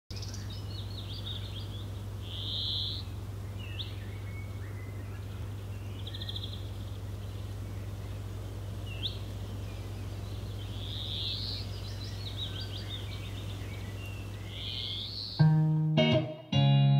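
Small birds chirping and trilling in short repeated phrases over a steady low background hum. About fifteen seconds in, a hollow-body electric guitar comes in with a plucked chord.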